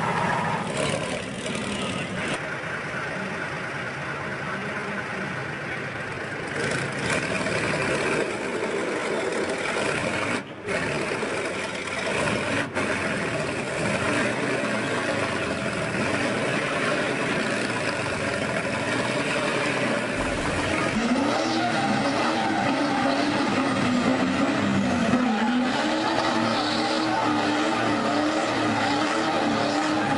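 Heavy vehicle engines running under load in a tank-versus-tractor tug of war: a tracked armoured vehicle's engine and a tractor's, with crowd voices. From about two-thirds of the way in, an engine note rises and falls as it labours.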